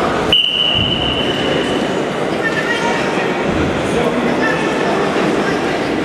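Spectators chattering in a large sports hall. About a third of a second in, a steady high-pitched signal tone sounds for nearly two seconds.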